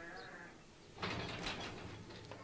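A farm animal bleating twice: a short wavering call at the start, then a louder, rougher one about a second in.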